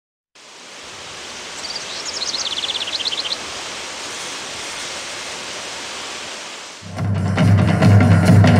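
A steady, even hiss with a quick run of high chirps about two seconds in. Near the end, a percussion group's drums come in loudly with a fast beat.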